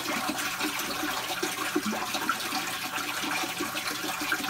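Steady rush of running water, with small irregular wet clicks over it.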